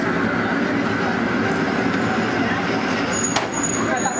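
Steady rushing noise of a working restaurant kitchen, with one sharp click about three and a half seconds in and a thin high tone starting just before it.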